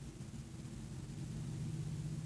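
Faint, steady low hum of room tone, with no distinct event.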